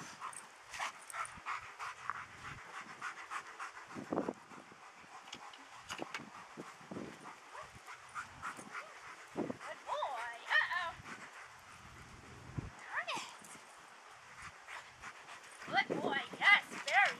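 German Shepherd working through agility weave poles: light clicks and rattles from the poles and footfalls on dirt, with a few short, high, sliding whines about ten and thirteen seconds in.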